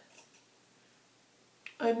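Hair-cutting scissors snipping through a stretched, dry curl: faint snips just after the start and one sharp click shortly before speech resumes.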